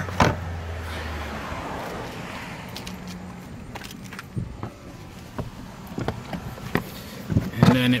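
Hands handling carpet and plastic trim inside a car's trunk: a soft rustle in the first second or so, then scattered light clicks and taps.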